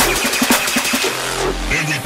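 Dark drum and bass (neurofunk) track in a short breakdown: the heavy sub-bass and full beat drop out, leaving sparser drum hits over a noisy, engine-like synth texture. A low bass swell comes in after about a second, followed by a short gliding bass note near the end.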